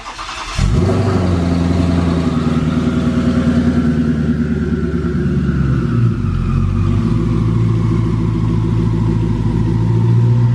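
Twin-turbocharged 5.0 L Coyote V8 of a 2019 Ford Mustang GT starting up: short cranking, then it catches about half a second in and runs at a loud, fast idle. The idle settles lower about six to seven seconds in.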